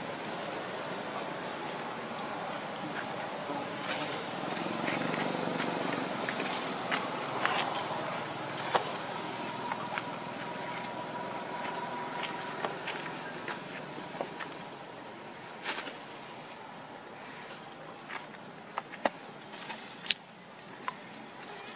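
Outdoor forest-floor ambience: a steady background hiss with a faint high-pitched hum, and scattered light clicks and rustles of dry leaf litter as the macaques move, more frequent near the end.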